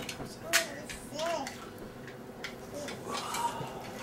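Plastic toy blocks clicking and knocking together as they are handled and stacked: a handful of sharp separate clicks. A few brief voice sounds come in between.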